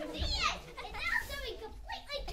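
High-pitched children's voices, with a falling cry about a quarter second in, followed by broken chatter.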